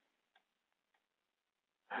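Near silence with two faint computer-mouse clicks, about a third of a second and a second in, before a man's voice starts at the very end.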